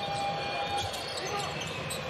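Basketball game sound in an arena: steady crowd noise with a ball being dribbled on the hardwood court. A held steady tone fades out a little under a second in.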